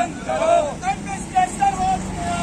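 Protest marchers shouting slogans in a run of short, high-pitched calls, with a vehicle engine running steadily underneath.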